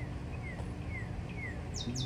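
Wild birds calling over a steady low background rumble: a few faint, short, falling chirps, then near the end a rapid run of high, falling notes starts.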